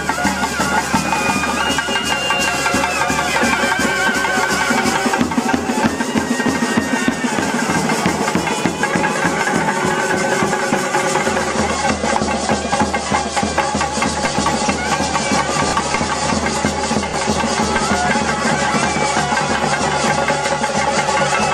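Traditional temple procession band playing: drums beaten in a dense, fast rhythm with cymbals, and a wind instrument's wavering melody over them.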